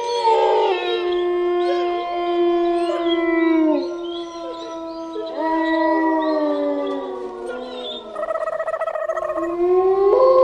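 Several long canine howls overlapping, each held and then sliding down in pitch, with one warbling near the end and a new howl rising just before the end.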